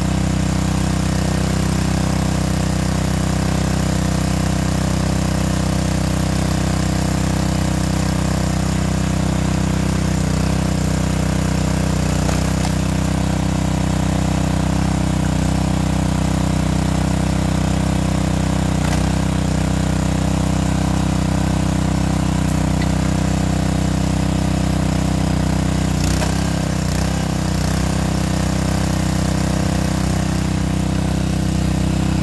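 The SuperHandy 20-ton log splitter's 209cc single-cylinder gas engine running steadily at constant speed, driving the splitter's hydraulic pump.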